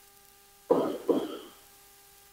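A man clearing his throat twice in quick succession, two short rasping bursts under half a second apart, a little under a second in.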